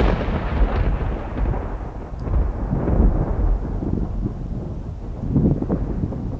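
Rolling thunder: a sharp onset just before the start fades into a long, low rumble that swells again a couple of times as it dies away.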